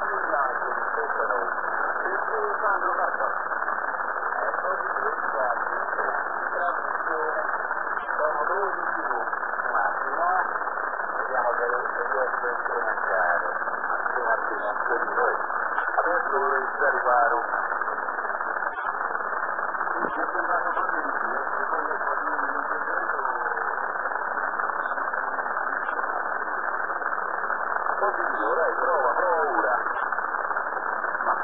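Voice of a radio operator heard over a shortwave receiver on the 45-metre band: narrow, muffled speech partly buried in steady receiver noise.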